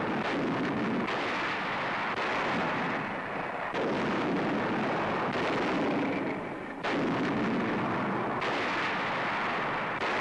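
Heavy artillery, Long Tom guns and howitzers, firing a barrage: a string of about half a dozen heavy blasts, a new one about every one and a half seconds, each trailing a long rumble so the sound never dies away between shots.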